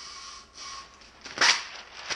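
Tape-edged masking paper drawn off a masking machine with a steady rasp, then torn off with one sharp snap about one and a half seconds in, followed by the sheet crinkling.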